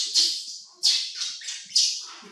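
Infant macaque screaming: a run of shrill, high-pitched cries about a second apart, each starting sharply and fading away.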